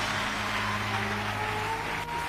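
Congregation applauding, with soft background music holding sustained low notes underneath.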